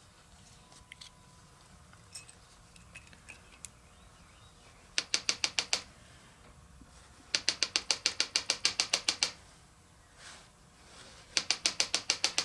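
Ratchet wrench clicking in quick, even runs of about nine clicks a second: a short run about five seconds in, a longer two-second run near eight seconds, and another near the end. Faint light clinks of small metal parts come between the runs.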